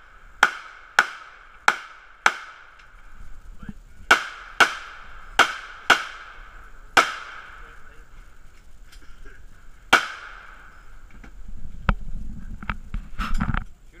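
Handgun shots in a timed course of fire, ten in all: four about half a second apart, a pause of nearly two seconds, five more, then a single shot about ten seconds in. Each shot rings briefly. A few softer knocks and a low rumble follow near the end.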